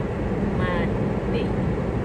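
Steady low road and engine noise inside a moving car's cabin, with a brief vocal sound a little over half a second in.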